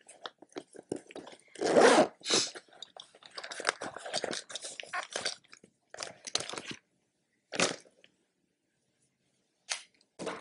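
Handling noises: irregular rustles, clicks and crackles, with a couple of louder ones about two seconds in, dying away about seven seconds in.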